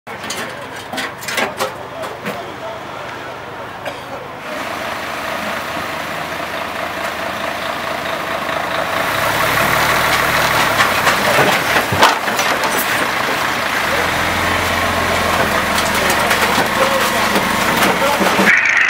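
An engine running steadily, with indistinct voices and scattered clicks and knocks over it; the noise grows louder about four and a half seconds in and again around nine seconds.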